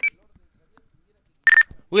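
A single short, high electronic beep about one and a half seconds in, after a near-silent pause.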